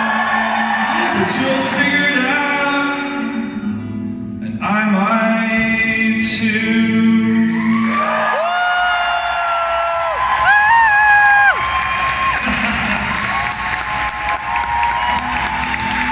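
Live performance by a band with acoustic guitar and a string orchestra, a man singing lead and holding two long notes in the second half. Near the end the music thins and the first applause comes in as the song closes.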